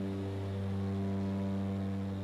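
Steady low drone of a twin-engine turboprop airplane's engines and propellers, an even hum of several pitched tones that holds without change.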